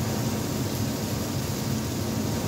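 Steady sizzle of diced pork frying in a pan on an induction hob, under a constant low ventilation hum.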